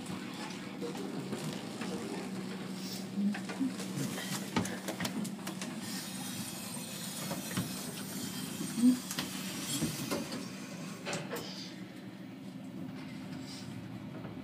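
Overhead geared traction elevator car travelling down, heard from inside the car: a steady low hum with a few faint knocks and clicks.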